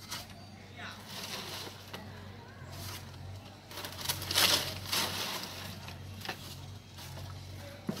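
People talking, with a loud hissing rustle about halfway through.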